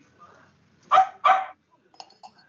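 A dog barking twice in quick succession about a second in: two short, loud barks.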